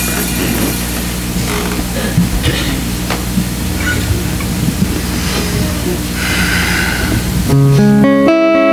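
Low sustained tones from the band's amplified instruments hold under faint scattered sounds, then about seven and a half seconds in the guitars come in loudly, strumming the opening of a worship song.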